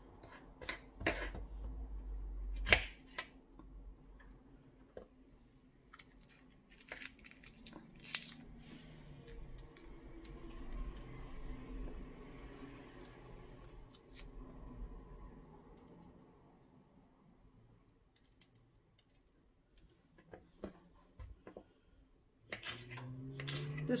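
Kitchen knife cutting a jalapeño pepper on a hard countertop: scattered clicks and taps as the blade goes through and strikes the surface, with one sharper knock a few seconds in.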